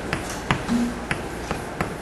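Chalk writing on a blackboard: about five sharp, irregular taps and clicks of the chalk stick in two seconds, the strongest about half a second in.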